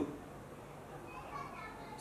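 A pause in a man's speech, filled with faint distant voices in the background and room tone.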